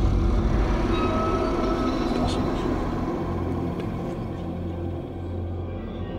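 Title-sequence soundtrack: a low rumbling drone with a few faint higher tones, slowly fading.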